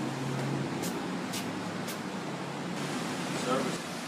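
Steady outdoor traffic noise from the street below, with a brief faint voice about three and a half seconds in.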